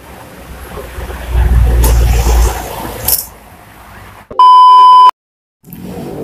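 Low rumble of street noise, loudest for about a second in the middle, then a loud, steady electronic beep lasting under a second, cut off into a brief dead silence.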